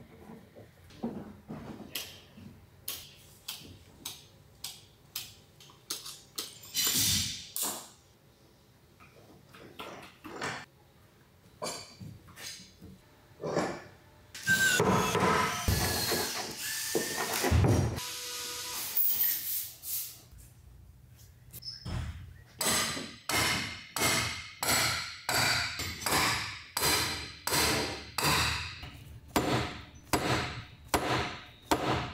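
Workshop work on heavy purpleheart timbers: scattered knocks and clatter of wood and clamps, a louder stretch of grinding noise of a few seconds near the middle, then steady hammer blows about two a second near the end, driving bolts through the clamped rudder timbers.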